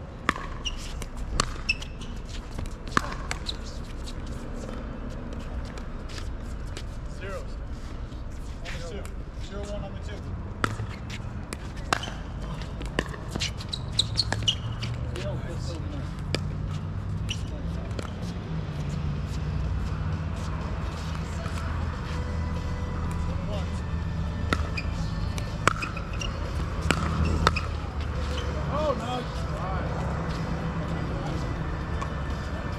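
A pickleball rally: sharp pops of paddles striking a plastic pickleball, with ball bounces on the hard court, coming at irregular intervals. They are heard over a steady low rumble that grows louder about halfway through.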